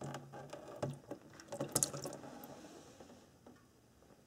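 A 3/8-inch-drive ratchet clicking faintly in short runs as the automatic transmission's drain bolt is backed out, with a few light knocks among the clicks. The clicking stops about three seconds in.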